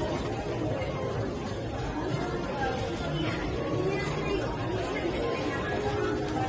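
Indistinct background chatter of voices over a steady hum of room noise in a large indoor public space.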